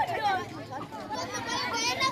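Children's voices calling and shouting over one another while they play, several at once and none clearly in front.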